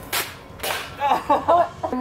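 A toy blaster firing two quick shots about half a second apart, followed by a man laughing.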